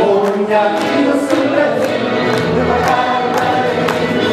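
Accordion music with a group singing along, and guests clapping in time, about two claps a second.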